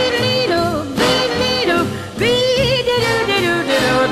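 A female jazz singer scat-singing wordless phrases over a swing band. The phrases last about a second each, with held notes and a wavering, shaken note about halfway through.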